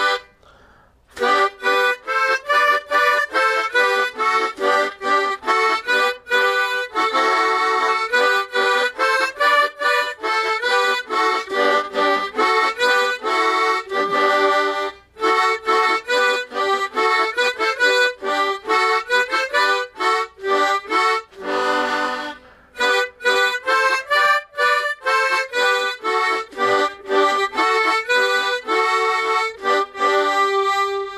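Harmonica playing one verse of a song melody, several notes sounding together. It starts about a second in, with brief gaps about halfway and about two-thirds of the way through.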